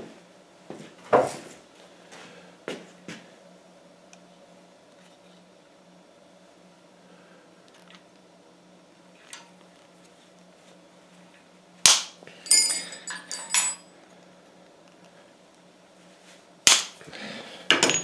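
Heavy wire cutters snipping the ends off stiff steel wire: two sharp snaps about twelve and seventeen seconds in. Light metallic tinkling follows the first snap as the cut-off end bounces on metal.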